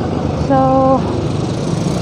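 Steady engine noise of road traffic close by, with a hiss that grows near the end.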